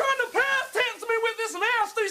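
A man shouting in a high, strained voice, in short broken bursts of words.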